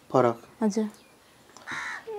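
A crow cawing a few times in short, harsh calls.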